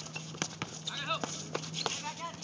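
A string of sharp, unevenly spaced knocks, about seven in two seconds, with short shouted voices around a second in and a steady low hum underneath.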